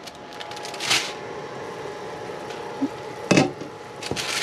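Water at a rolling boil in a pot on a gas hob, a steady bubbling hiss, with the crinkle of a plastic boil-in-bag handled about a second in and again just after three seconds.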